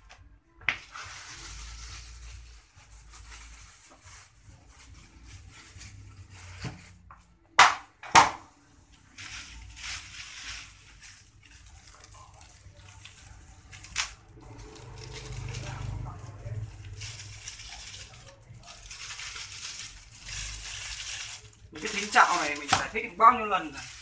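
Rustling and crinkling of packets and a plastic bag being handled and opened over a plastic basin while fishing bait is mixed, in long stretches, with a few sharp clicks, two of them close together about eight seconds in. A man's voice comes in near the end.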